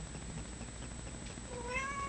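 A domestic cat giving one faint meow near the end, a short call that bends slightly in pitch, over quiet room tone.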